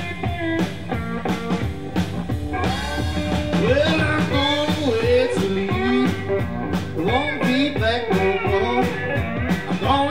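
Live Mississippi Hill Country blues: a hollow-body electric guitar played with a slide over a steady drum-kit groove. About three seconds in the guitar starts sliding up and down between notes, over regular drum strikes.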